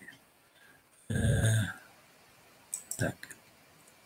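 A man's drawn-out hesitant 'eee' about a second in, then a few faint computer clicks near three seconds as a file is searched for on the computer.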